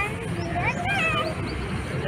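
A young child's high voice making a few short, soft sounds over a steady low outdoor rumble.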